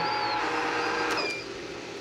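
Electric Cuisinart ice cream maker running, its motor driving the paddle through frozen sorbet with a steady hum and whine. The sound drops away a little over a second in.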